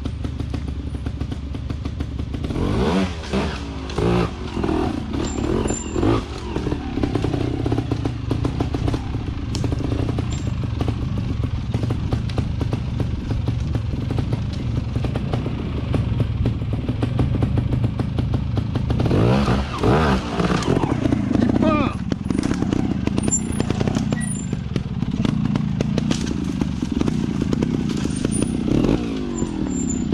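Trials motorcycle engine running, with short throttle blips that rise and fall in pitch, the loudest bursts of revving coming about three to six seconds in and again about twenty seconds in, as the bike is ridden up over boulders.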